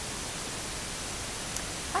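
Steady, even hiss of background noise with no other sound, apart from a faint tick about one and a half seconds in.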